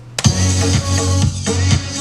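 The drop of an electronic dance track playing back. It comes in suddenly about a quarter second in, with heavy bass and a kick drum about twice a second and chopped-up vocal samples over it.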